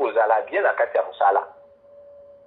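Speech: a voice talking for about the first second and a half, then a pause in which only a faint steady tone is heard.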